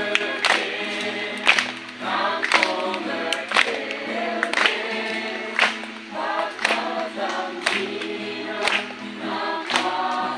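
A group of people singing a hymn together in chorus, with a sharp beat about once a second.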